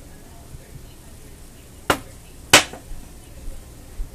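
Two sharp knocks about two-thirds of a second apart, the second louder, while the last of a dry chai tea mix is tipped into a glass jar.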